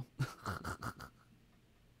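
A man's short, breathy laugh: five or six quick pulses just after the start, over within about a second.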